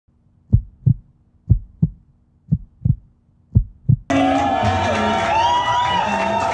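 A heartbeat sound effect: four double low thumps, about one a second. About four seconds in it cuts suddenly to loud music.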